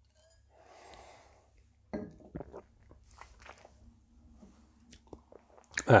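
A person tasting beer: a soft sip or breath about a second in, then small wet mouth clicks and lip smacks as the beer is worked around the mouth.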